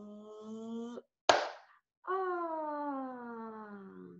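A woman's fireworks cheer done with the voice and hands: a held note slowly rising in pitch, cut off about a second in by one sharp, loud hand clap, then a long 'oh' that slides down in pitch.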